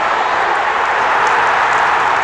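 Large football stadium crowd cheering and clapping as a goal goes in, a dense loud wall of noise that swells slightly about a second in.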